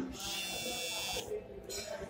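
Smartphone vibration motor buzzing for an incoming call, picked up by the phone's own microphone: a buzz of about a second, a short pause, then the next buzz starting near the end.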